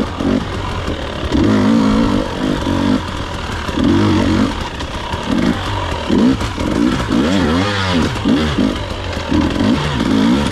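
Dirt bike engine revving up and down over and over, the throttle going on and off about once a second as the bike is ridden through tight singletrack.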